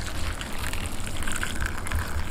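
Broth poured in a steady stream from a pot into a bowl of noodles and bean sprouts, splashing as the bowl fills.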